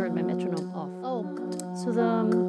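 Layered vocal loops playing back from a looper app: a steady single-note drone with held harmony tones, and voice-made vocal percussion and bending vocal sounds over it.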